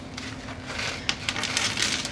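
Crushed seashell pieces poured from a bag onto a line of hot glue: a dense patter of small hard pieces landing and skittering, thickening from about half a second in.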